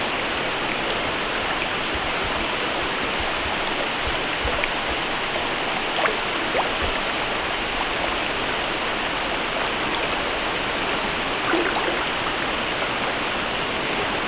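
Trout stream running steadily, a continuous rush of moving water, with a few faint ticks now and then.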